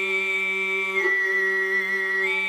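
Tuvan throat singing in sygyt style: one voice holds a steady low drone while a high, whistling overtone carries the melody above it, stepping down to a lower note about a second in.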